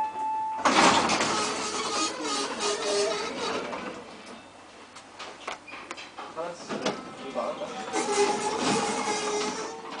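Busy shop-floor ambience of many people chattering floods in as the lift doors open about half a second in, stays loud while the car stands at the floor, then cuts down as the sliding doors close near the end. A steady electronic tone stops just as the doors open.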